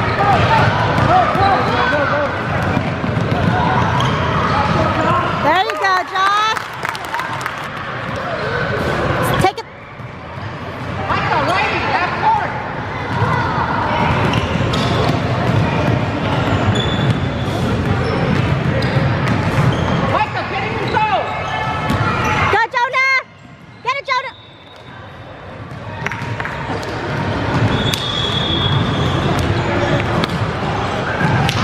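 Basketball dribbled and bouncing on a hardwood gym floor during a children's game, with many voices from players and spectators echoing in the hall.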